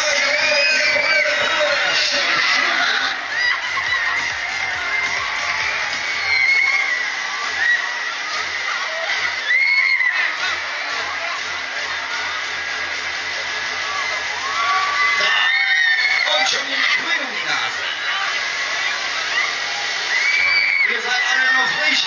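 Riders screaming and cheering again and again on a Mondial Top Scan thrill ride as it spins and flips them, with music playing behind.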